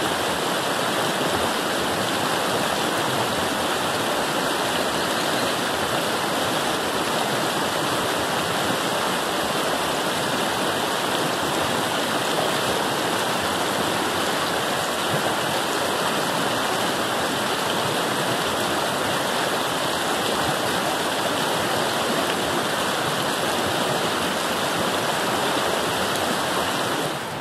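South Fork of the Kern River flowing over shallow, rocky riffles: a steady rush of water.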